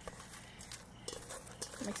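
Folded paper slips being stirred by hand in a ceramic bowl: faint rustling with a few light taps.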